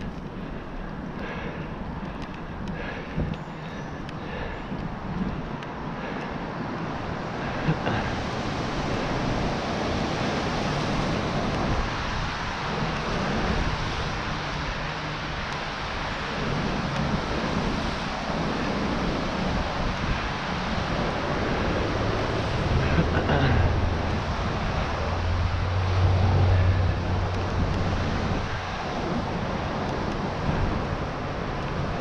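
Steady wind noise on an action camera's microphone, mixed with tyre hiss from a bicycle riding on wet pavement, with a deeper rumble in the last third.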